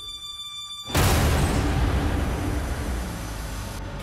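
A trailer sound-design hit. After a faint sustained high tone, a loud boom-like impact arrives about a second in, followed by a long noisy rumble that slowly dies away.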